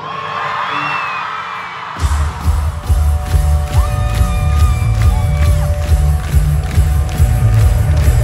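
Arena crowd cheering and screaming. About two seconds in, a live pop-rock band comes in loud with a heavy bass riff and drums, the opening of a song.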